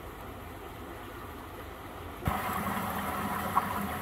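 A faint steady hum, then, after a sudden change about two seconds in, a louder steady rush of water circulating through a Nexus koi pond filter, with a low hum underneath.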